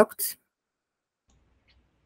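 A woman's voice finishing a word in the first moment, then near silence.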